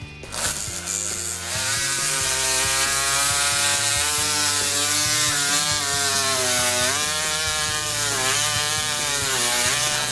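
Powered surgical drill running as it drives a pin into a synthetic foam femur model. Its motor pitch sags and recovers several times as the pin bites, dipping most about seven seconds in.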